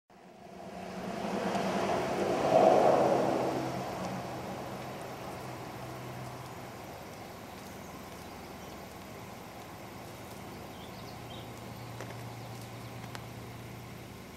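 A motor vehicle passing by: a steady engine hum that swells to a peak about three seconds in and fades away over the next few seconds, leaving a faint low hum.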